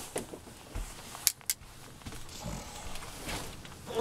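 Rustling and light knocks of a person settling into a seat at a table, with two sharp clicks in quick succession about a second and a quarter in.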